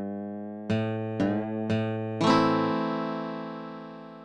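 Fingerstyle acoustic guitar from tab playback playing the closing phrase: three single plucked notes about half a second apart, then a final A minor chord about two seconds in that rings and slowly fades.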